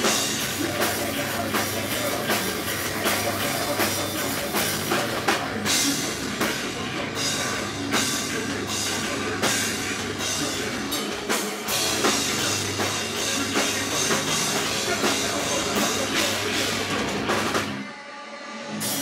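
A live heavy rock band plays loud, dense music with electric guitar and a prominent drum kit. The band drops out abruptly right at the end.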